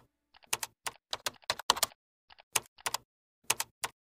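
Computer-keyboard typing sound effect: irregular runs of quick keystroke clicks broken by short pauses, stopping just before the end.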